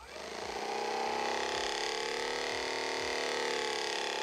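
A Theragun Pro percussive massage gun switching on and running at 1750 percussions per minute, set by its app's preset. Its motor hum rises over the first second as it spins up, then runs steadily.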